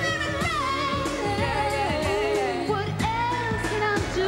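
A woman singing a pop song live into a handheld microphone over backing music, with sliding vocal runs early on and long held notes in the second half.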